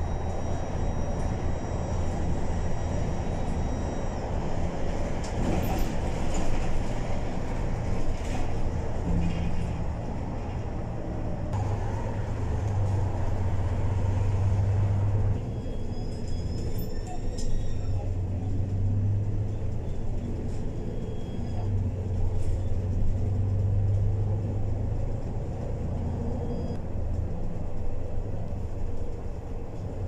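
Inside a moving bus: steady low engine rumble and road noise as it drives along a highway.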